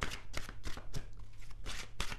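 Tarot cards being shuffled by hand: a quick, irregular run of soft card slaps and riffles, several a second.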